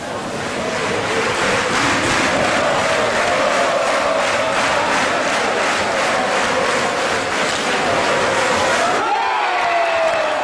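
Ice hockey arena crowd cheering and chanting loudly, with a rhythmic beat through it. Near the end the noise thins and a single falling tone is heard.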